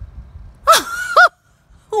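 A woman's excited, high-pitched exclamation of delight: two short squealing cries, the first falling in pitch and the second rising and falling, about two-thirds of a second and just over a second in.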